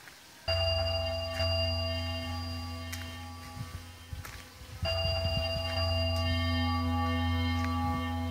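Music: a phrase of held chords over a low bass note, starting suddenly about half a second in and starting over again about four seconds later.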